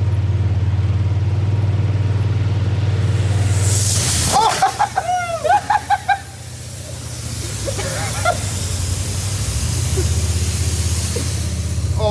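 Polaris RZR side-by-side's engine idling, then about four seconds in a car wash's water jets start spraying the open cab with a loud hiss that runs on almost to the end. Laughing and shouting rise over the spray just after it starts.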